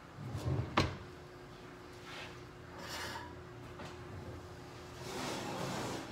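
Kitchen oven door opened with a sharp clack about a second in, followed by quieter scraping and shifting of a pan on the oven rack to make room, over a faint steady hum.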